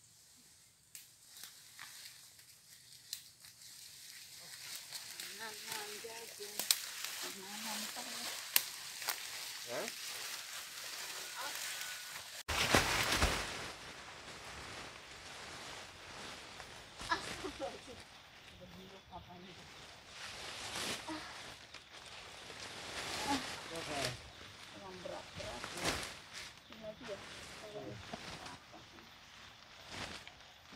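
Rustling and crunching through dry leaf litter and undergrowth, with scattered sharp clicks and faint voices; a sudden loud rustle about halfway through.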